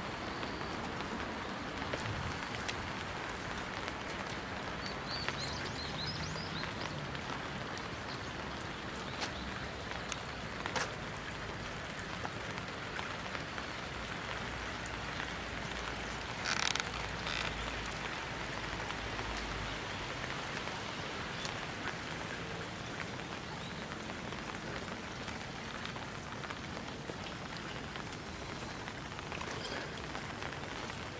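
Steady rain falling on surfaces, an even hiss with a few sharper drop taps; the loudest cluster of taps comes a little past the middle.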